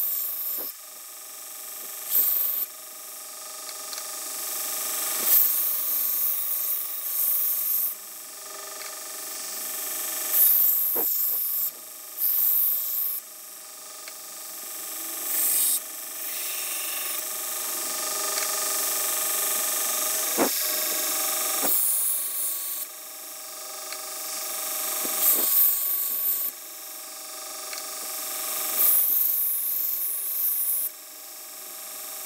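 Belt grinder running with a steady hum while a steel knife blade is ground against its abrasive belt. Repeated passes every two to three seconds: each builds up as a hiss of metal on abrasive and ends in a brief, bright scrape.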